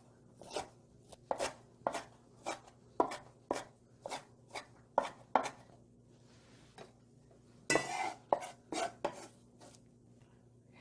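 Chef's knife chopping wild chives on a wooden cutting board: sharp knocks about two a second for the first five seconds or so. After a short pause comes a longer scrape as the blade sweeps across the board, then a few lighter taps.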